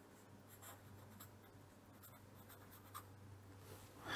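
Very faint scratching of a felt-tip pen writing on paper, near silence otherwise, with a small tick about three seconds in.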